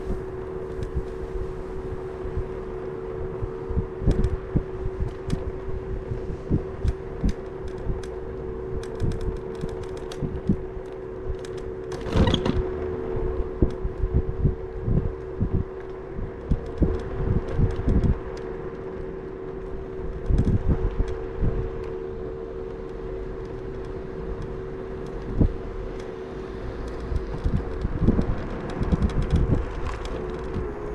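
Electric scooter motor whining at a steady pitch while riding, with frequent knocks and rattles from the scooter over the road surface. A louder, noisier burst comes about twelve seconds in.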